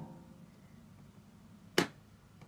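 Quiet room tone with one sharp click near the end; no van chime is heard.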